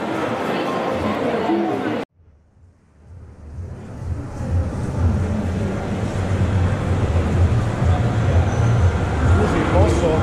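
Busy indoor food-stall ambience with background voices. About two seconds in it cuts off abruptly to near silence, then fades back up to a steady low hum with chatter underneath.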